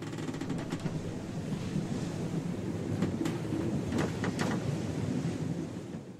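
Sea ambience: a steady rushing of surf and wind, fading out at the end.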